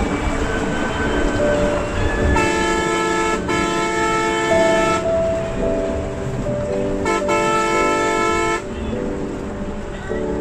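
Bus horn honking from inside the cabin: three long blasts starting about two and a half, three and a half and seven seconds in, the second the longest. Underneath are a low engine and road rumble and background music.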